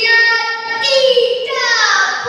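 A girl's voice reciting a Malay poem into a microphone, drawing the words out into long sung notes that fall in pitch near the end.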